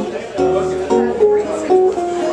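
Acoustic guitar playing a bossa nova instrumental passage: plucked chords over bass notes, changing several times a second.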